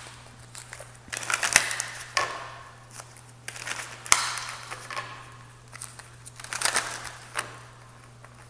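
A deck of tarot cards being shuffled by hand in three bursts of papery rustling, with a couple of sharp snaps among them.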